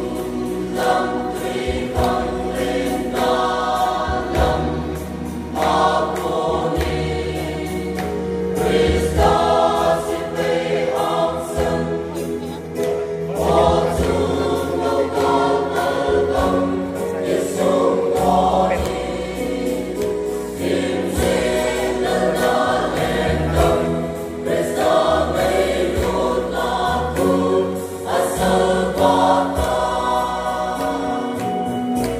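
Mixed choir of men's and women's voices singing a gospel song in parts, holding sustained chords that move from phrase to phrase.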